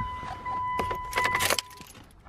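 Mitsubishi Lancer's key-in-ignition warning with the driver's door open: a steady high warning tone, with a jangle of car keys partway through. The tone cuts off soon after the jangle, near the end.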